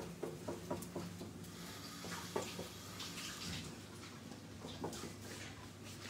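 Soft scraping and light taps of a spatula pressing a pasta-and-egg mixture into a nonstick frying pan, over a steady low hum.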